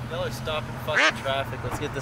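Pickup truck engine idling with a steady low hum.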